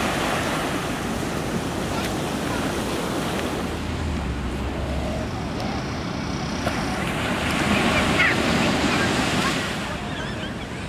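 Small waves breaking and washing up on a sandy beach, with wind on the microphone; the wash swells louder for a couple of seconds near the end.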